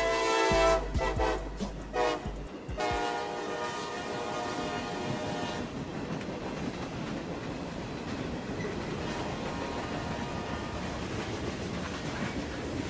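CSX diesel freight locomotive sounding its multi-tone air horn at a grade crossing: a blast at the start, short ones after, and a last long blast that cuts off about six seconds in. Then the steady noise of the freight cars' wheels on the rails as the boxcars roll past.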